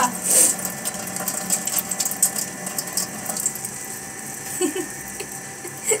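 A steady hum with many small clicks, taps and rustles of handling throughout.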